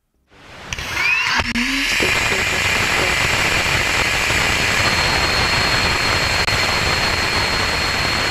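Sound of a Rocket Lab Electron second stage in flight, made from structure-borne vibration of its Rutherford vacuum engine and structure that was recorded and converted into audible sound. It fades in over about the first second, then runs as a steady loud rushing noise with a thin high tone.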